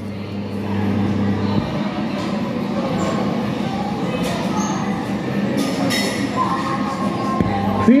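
Steady rumbling background noise with a low hum in the first second or so and a faint steady tone near the end, between two of the kiddie ride's recorded prompts.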